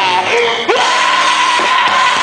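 Live rock band playing loud with guitars and drums while the vocalist screams into the microphone. About two-thirds of a second in, a rising note settles into a long held tone.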